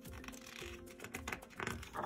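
Soft background music with steady held notes, under light clicks and paper rustle from a picture book's pages being handled. The rustle grows louder near the end as a page is turned.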